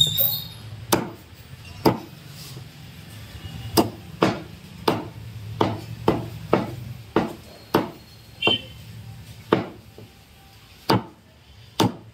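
A heavy Chinese cleaver chopping raw chicken into small pieces on a wooden log block: about a dozen sharp chops at uneven intervals, some in quick pairs.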